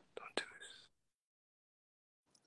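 Faint, brief soft voice sounds, like a whisper or breath, with a couple of small clicks in the first second over a phone-call video stream, then the audio cuts to complete silence.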